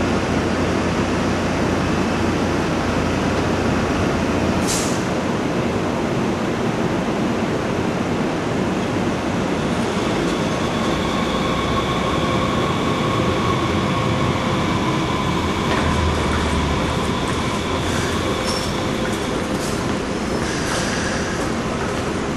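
A train running on rails, a steady loud rumble and rush of noise. A high, thin squeal, likely the wheels on the rails, holds from about ten seconds in to about twenty seconds, and a few sharp clicks come near the end.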